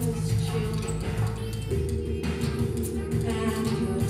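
Live electronic music: a mutantrumpet (an electronically processed trumpet) and a woman's voice over a sustained low synth bass and a ticking electronic beat. The bass chord shifts to a new pitch a little under two seconds in.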